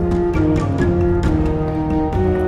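Instrumental music: a melody of held notes that changes pitch about twice a second over a low, steady bass.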